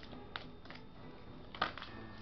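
Oracle cards being handled as a card is drawn from the deck: a few soft clicks and rustles, the clearest about one and a half seconds in.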